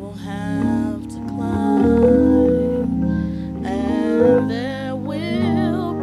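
Gospel solo singing with vibrato over held keyboard or organ chords.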